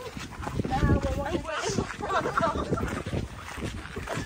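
Snatches of women's voices, talking and laughing indistinctly, over a low rumble of wind on the microphone.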